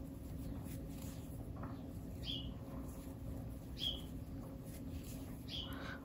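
Faint high chirps from a bird, three short falling notes about a second and a half apart, over a low steady hum.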